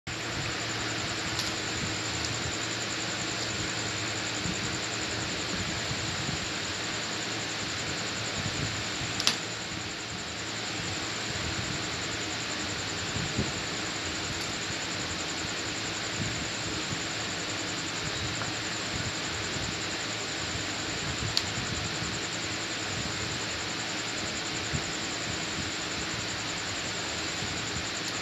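Cauliflower florets being cut on a boti, a fixed upright curved blade, giving a few sharp snaps, the loudest about nine seconds in, over a steady fan-like hiss and hum with a thin high whine.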